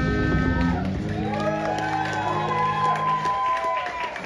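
Live rock band of electric guitars and drums ending a song: a chord is held while guitar notes bend up and down above it, and the sound dies away near the end.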